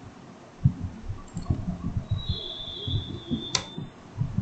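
Computer keyboard keystrokes and mouse clicks: a run of quick, irregular taps, with one sharp click near the end.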